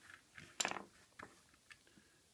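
Hard plastic parts of a Transformers Combiner Wars First Aid figure clicking and scraping as small weapon pieces are handled and pegged into the sides of the ambulance-mode toy: a few faint clicks, with a louder one a little over half a second in.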